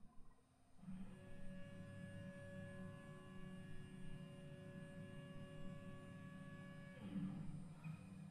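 A faint, steady hum of several held tones that shifts to a new set about seven seconds in.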